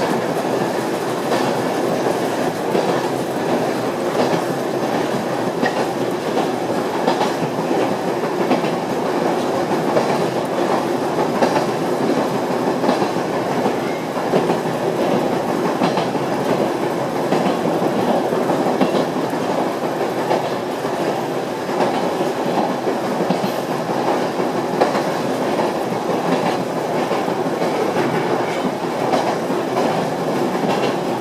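Yoro Railway electric train running along the line, heard from inside the rear cab: a steady rumble of wheels on rail, with wheels clicking over rail joints every second or two.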